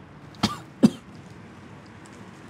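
A woman coughing twice, two short sharp coughs less than half a second apart, the second the louder.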